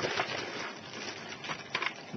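A thin clear plastic bag crinkling as hands dig into it to pull out Lego baseplates, with a few sharper clicks late on.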